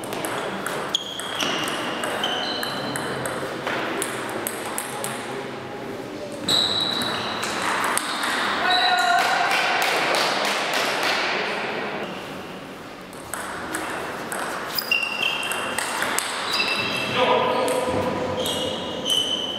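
Table tennis ball clicking off paddles and the table in a rally, each hit a sharp click with a short high ping. A few seconds in the middle fill with voices and noise from the hall after the point, and near the end the ball clicks again as play resumes.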